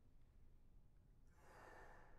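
Quiet hall near silence, then a little past halfway a faint, quick intake of breath by the bass trombonist just before his first note.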